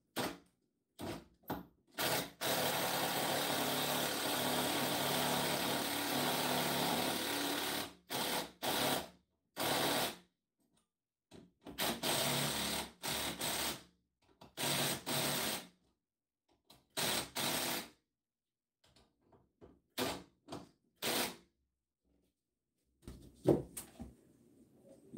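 Cordless drill driving lag bolts through a steel barn-door rail into the wall studs: one long run of about six seconds, then several shorter bursts of a second or so as the bolts are snugged down.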